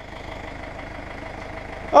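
Farm tractor's diesel engine running steadily, a low even drone.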